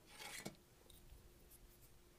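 Near silence, with one faint, brief scrape of a hand tool against clay in the first half second, ending in a small click.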